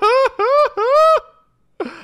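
A man laughing in three high-pitched, arching bursts, the last one held longest, then a short pause.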